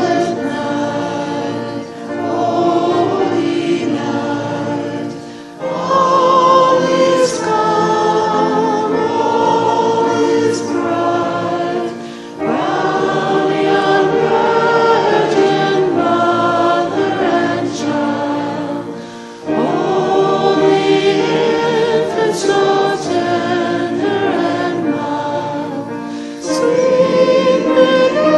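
A choir singing in long phrases of several seconds, each broken off by a short pause for breath.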